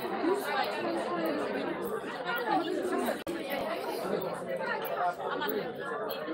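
Indistinct chatter of many people talking at once, with no single voice clear. The sound briefly cuts out a little after three seconds.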